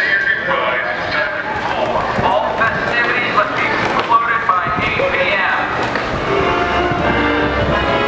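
Several people's voices talking over loud music from the stage show, with the music coming through more clearly near the end.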